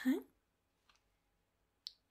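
A woman's short spoken "huh?", then a pause of near silence broken by a faint tick about a second in and a short, sharp click near the end.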